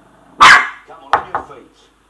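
Young Shih Tzu puppy barking: one loud bark about half a second in, then two shorter, sharp barks in quick succession.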